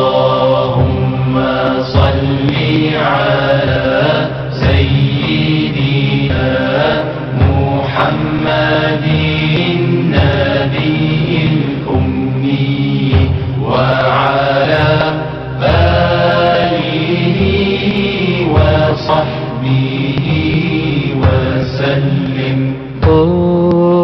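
Chanted Arabic devotional singing (a salawat nasheed), a voice drawing out long gliding notes over a steady low drone with a slow, regular pulse.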